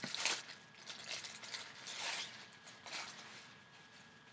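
Thin plastic packaging crinkling and rustling in several short, faint bursts as an item is worked out of it.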